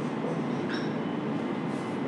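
Felt-tip marker writing on a whiteboard, with a brief faint squeak of the tip a little under a second in, over a steady background noise.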